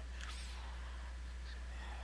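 Steady low electrical hum and faint hiss of the recording's background noise, with a faint brief sound about a third of a second in.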